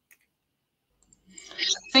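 Near silence broken by a faint click or two, then a woman draws breath and begins to speak near the end.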